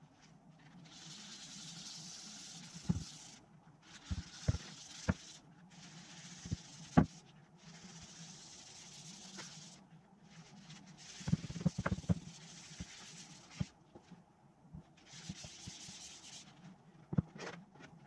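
A rag rubbing wax finish onto a walnut board: a series of soft wiping strokes, each a second or two long with short pauses between, and a few light knocks from hands and objects on the board and bench.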